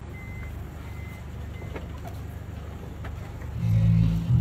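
A vehicle engine idling with a steady low rumble, with three short high beeps about a second apart in the first two seconds. Loud music comes in near the end.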